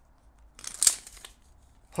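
Tape measure blade pulled out of its case: a short rasp of about half a second, starting about half a second in, with a sharp click in the middle.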